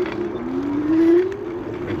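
E-bike drive motor running with a steady whine, joined by a second tone that rises in pitch to meet it, loudest about a second in, over tyre and wind noise.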